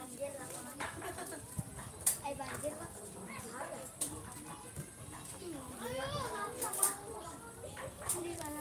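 Voices calling and chattering around a football pitch during a youth match, rising to louder calls near the end, with a few sharp knocks along the way.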